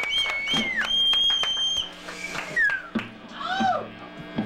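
Live garage band on stage: long high squealing tones that bend in pitch, then short rising-and-falling wails, over a few scattered drum hits.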